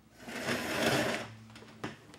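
A padded meeting-room chair being pulled out from a table, a rattling scrape that swells and fades over about a second, followed by a single sharp knock near the end.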